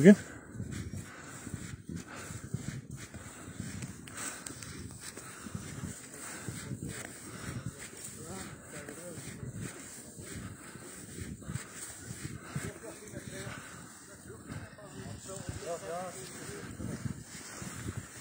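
Footsteps crunching irregularly through deep snow as someone walks, with faint voices in the background.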